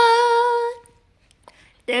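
A girl singing unaccompanied, holding one steady note that fades out under a second in.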